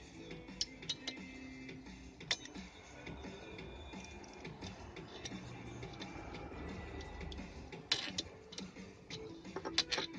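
Soft background music, with a few sharp metallic clicks as a wire lug is fitted onto a bolt and a nut is tightened with a wrench. The clicks come singly in the first seconds and in a short cluster near the end.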